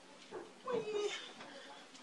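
Only speech: a single short spoken "oui" about a second in, over a faint quiet background.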